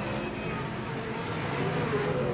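Engines of a pack of racing stock cars running at speed: a steady engine noise that swells slightly near the end.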